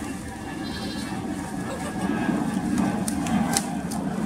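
Goats bleating as they crowd around begging for food, louder from about halfway through, with a few short clicks near the end.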